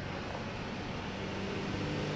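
Street traffic: vehicle engines running as vehicles pass, a low engine hum growing slowly louder.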